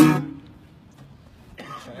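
One hard strum across the strings of an acoustic guitar, ringing out and fading within about half a second.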